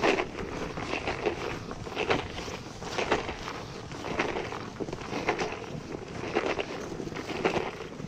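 Footsteps crunching in packed snow at a walking pace, about one crunch a second.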